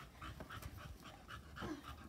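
A dog panting faintly, in quick short breaths.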